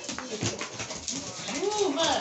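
A dog whining, with a short rising-then-falling whine near the end, over light clicks and scuffling.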